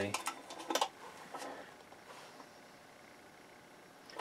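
Faint handling sounds of a tape measure on a sheet-aluminium chassis box: a few light clicks and knocks in the first second and a half.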